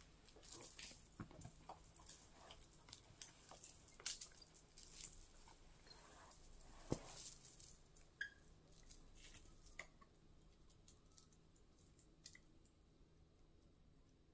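Faint, scattered clicks and light rustles of a gold chain-link belt and its metal clasp being handled against a wool poncho, one sharper click about seven seconds in, growing sparser after about ten seconds.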